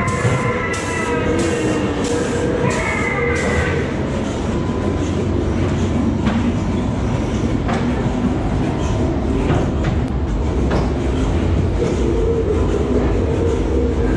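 Ghost-train ride car rolling along its track: a steady low rumble and clatter of the wheels, with occasional clicks. For the first few seconds a tonal sound pulses about twice a second, then stops about four seconds in.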